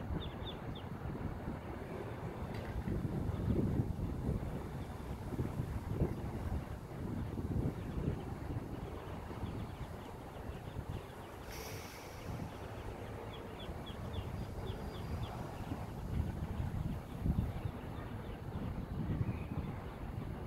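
Wind buffeting the microphone in gusts, with faint bursts of rapid, high peeping from Muscovy ducklings near the start and again past the middle. A brief rustle comes about halfway through.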